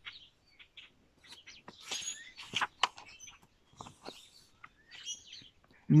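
Wild birds chirping in short, scattered calls, with the paper rustle of a picture-book page being turned.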